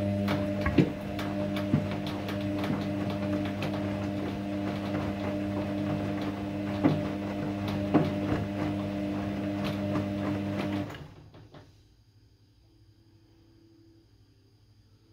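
Kogan front-loading washing machine tumbling a load on its quick wash cycle: a steady motor hum with clothes and water sloshing and knocking in the drum. The drum stops suddenly about eleven seconds in.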